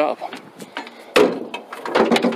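A single sharp wooden knock about a second in, as a wooden mop handle is set down and stowed inside the van, with quieter handling rustle around it.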